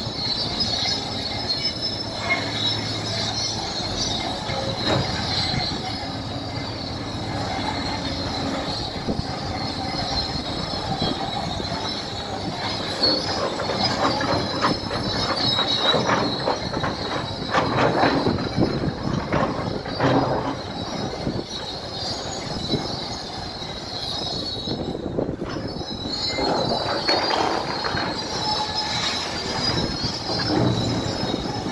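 Crawler bulldozer working: its steel tracks squeal and clank over the steady run of the diesel engine, with heavier clanking about halfway through and again near the end.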